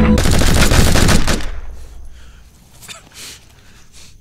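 Rapid automatic gunfire from several guns at once, a dense volley lasting just over a second, then dying away.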